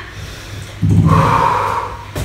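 A woman's heavy, breathy exhale starting about a second in and lasting about a second, as she catches her breath after an abdominal workout.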